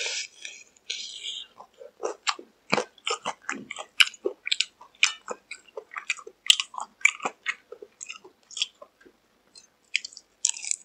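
Biting and chewing crispy-coated McDonald's fried chicken: a loud crunchy bite at the start and another about a second in, then a quick, uneven run of crisp crackles as the coating is chewed.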